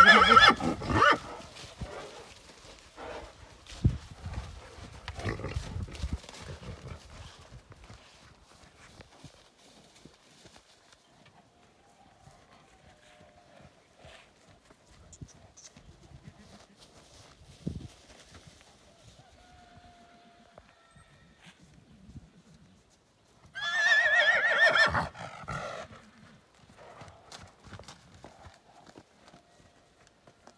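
Heavy draft horse neighing loudly twice: one call fading out in the first second and a second, about two seconds long, around 24 seconds in. Quieter scattered thuds from the horse moving on grass come in between.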